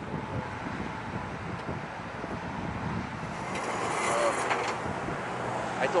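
Twin jet engines of a Boeing 767-300 on final approach, a distant low rumbling roar that grows gradually louder, mixed with wind on the microphone.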